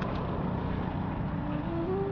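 Small motorcycle engine idling steadily, a low even rumble.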